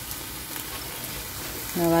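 Steady low sizzle of oil in a hot steel kadai as sautéed vallarai keerai leaves are lifted out with a slotted spoon.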